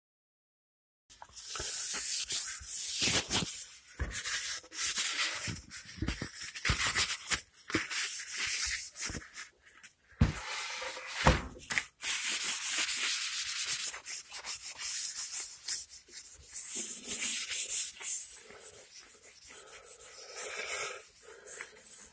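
A paper paint-preparation wipe is rubbed back and forth over a sanded guitar body, making a dry, scuffing hiss that starts about a second in. A few sharp knocks come between the strokes.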